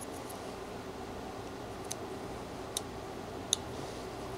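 Whittling knife cutting into a small piece of wood: three short faint ticks in the second half as the blade takes off small bits, the last the loudest, over a steady low hum.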